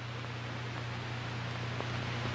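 Steady hiss with a low, constant hum from an old film soundtrack, growing slightly louder, in a gap between narration.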